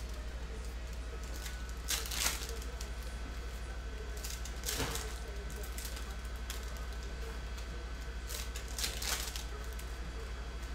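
Foil trading-card pack wrappers crinkling and tearing open in the hands, with sharp crackles about two, five and nine seconds in, over a steady low hum.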